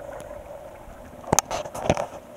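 A faint steady hum, then a few sharp clicks and knocks from handling in the second half, the loudest two about half a second apart.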